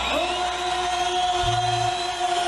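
Live band music: a long note held steady over a low bass, with a short deeper bass note near the end.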